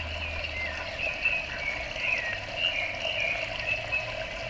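Water trickling and gurgling steadily through an aquaponics system, with short bubbling chirps throughout and a low hum underneath.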